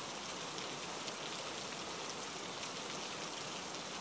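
Steady rain falling, an even wash of sound with no breaks or changes.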